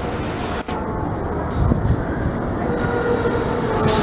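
Diesel-hauled passenger train moving slowly past the platform: a steady rumble of the locomotive and rolling coaches, with short hissing surges and a thin steady squeal coming in near the end.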